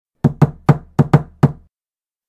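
Six sharp knocks on a door in an uneven, patterned rhythm, over about a second and a half.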